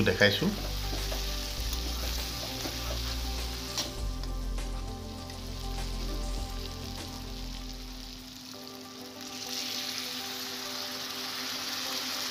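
Goat meat and potatoes sizzling as they fry in a pan, turned now and then with a metal spatula. The sizzle grows louder in the last few seconds, over a low hum that stops abruptly about eight seconds in.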